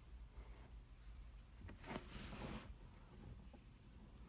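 Faint rustling of hands handling material close to the microphone, strongest for about a second in the middle, over a low steady hum.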